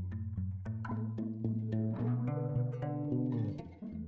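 Instrumental background music: plucked notes over held bass notes.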